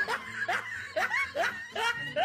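A person snickering: a run of short, high-pitched laughs, about two a second.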